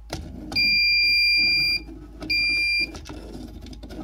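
Digital Circuit Detective breaker-finder receiver beeping: one long, steady high-pitched beep starting about half a second in, then a shorter one a little after two seconds. The beeps signal that it has picked up the transmitter's signal on the breaker it is held against.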